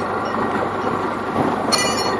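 Mobile crane's engine running steadily, with a brief high-pitched metallic squeal near the end.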